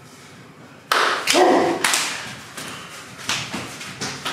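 Sumo wrestlers clashing at the charge: a sudden loud slap of bodies colliding about a second in, with a short shout right after. Smaller slaps and thuds follow as they push.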